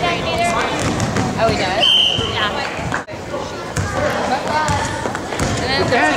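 A basketball bouncing on a wooden gym floor during play, amid the voices of players and spectators in the hall. A brief steady high tone sounds about two seconds in.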